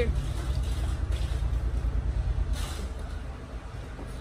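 A low, pulsing rumble like a motor vehicle's engine that fades away about three seconds in.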